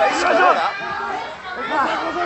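Several voices talking and calling out over one another, speech-like and continuous, in a large hall.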